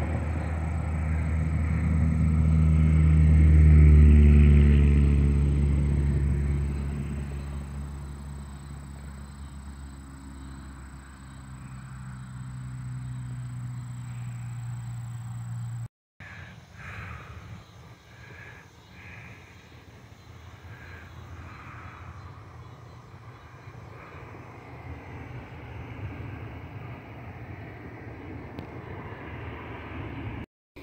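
A motor vehicle passing by: its engine drone swells to a peak about four seconds in, then falls in pitch as it moves away, leaving a lower steady hum. About halfway through, the sound cuts out briefly and gives way to quieter outdoor background noise.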